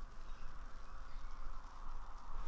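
Faint, steady fizzing of fine gas bubbles rising through soapy water from a static degassing lance under a water test.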